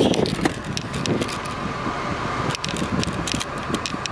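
Steady road and engine noise heard inside the cabin of a moving Honda sedan, with scattered light clicks and rattles over it.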